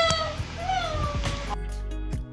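A kitten meowing: the tail of one long meow, then a second, shorter meow that rises and falls. About one and a half seconds in, background music starts abruptly.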